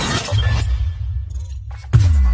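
Cinematic intro sound design over music: a deep bass rumble, then a sharp crashing hit near the end followed by a falling boom.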